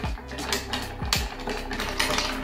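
Ice cubes clicking and rattling against a glass mixing glass as a long bar spoon stirs them, a quick irregular run of clicks, over background music. The stir chills the drink to temperature.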